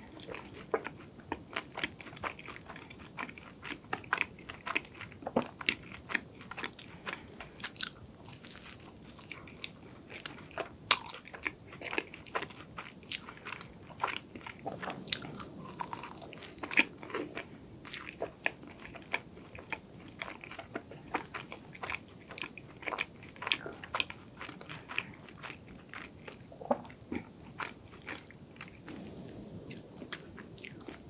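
Close-miked chewing of a flaky matcha croissant pastry: many small, irregular crunches and crackles of the crisp layered crust.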